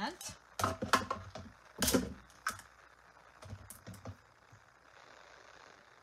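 Clicks and taps of plastic cutting plates, a metal die and paper being handled and set onto a small hand-cranked die-cutting machine. There are a few sharp clicks in the first two seconds, the loudest about two seconds in, and a couple of lighter taps around three and a half to four seconds.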